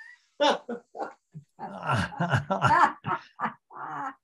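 Laughter: a string of short, choppy bursts of laughing after a joke about killing a carp.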